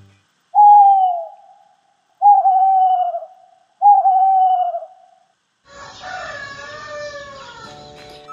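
Night-time sound effect of an owl hooting three times, each hoot a single falling tone about a second long. About six seconds in, a longer, rougher call follows, a rooster crowing for morning.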